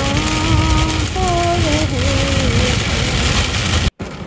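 Heavy rain pelting a car's windscreen and roof during a storm, heard from inside the car, with strong low wind noise. A woman's voice sings long held notes over it.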